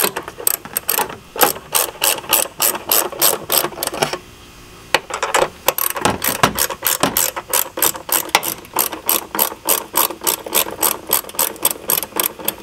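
Ratchet wrench with a 10 mm deep socket clicking in quick repeated strokes as it loosens the battery hold-down nuts. The clicking stops briefly about four seconds in, then starts again on the second nut and runs at a few clicks a second.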